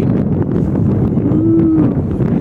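Low rumble of wind buffeting the microphone, with a short hummed 'mmm' from a man about one and a half seconds in.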